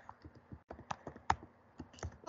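Typing on a computer keyboard: about a dozen quick key clicks at an uneven pace as a word is typed.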